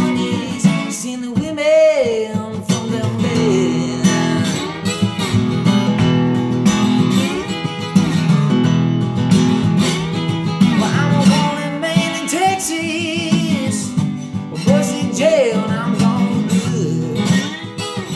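Solo acoustic guitar strummed in a steady blues rhythm, with a man singing phrases over it at intervals.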